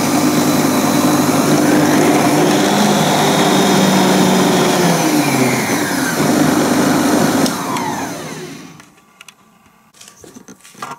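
Moulinex Masterchef 750 food processor motor running steadily with an empty bowl; its pitch drops about five seconds in as the speed dial is turned down. A couple of seconds later it is switched off and winds down to a stop.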